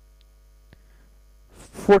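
Steady low electrical mains hum, with one faint click about three-quarters of a second in; a man starts speaking near the end.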